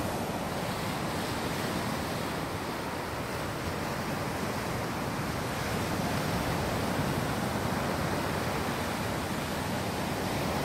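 Ocean surf washing steadily onto a sandy beach, swelling slightly past the middle, with wind rumbling on the microphone.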